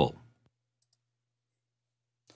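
A man's voice finishing a spoken sentence, then near silence with a faint steady low hum and one tiny click just under a second in.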